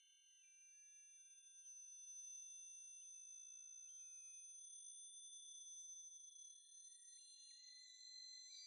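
Faint acousmatic electronic music: a cluster of high, pure sine tones layered together, each holding steady and then stepping to a new pitch. A few new tones come in near the end.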